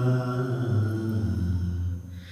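A man's voice chanting in a slow, drawn-out, mantra-like intonation into a microphone: one low held note that sinks slightly in the second half and breaks off at the end.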